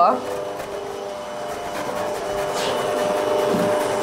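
Electric stand mixer running with a steady motor hum as it mixes waffle batter, growing slightly louder.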